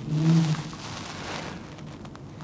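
A man's brief hummed filler sound, a flat 'mm' lasting about half a second, then a pause with only the room's background noise.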